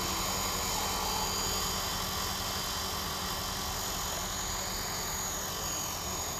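450-size electric RC helicopter flying low, its motor and rotor head giving a steady high whine over the whirr of the spinning blades.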